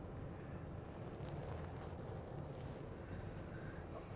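Faint, steady road and tyre rumble heard inside the cabin of a Toyota Vellfire hybrid driving at about 50 km/h; the cabin is otherwise quiet.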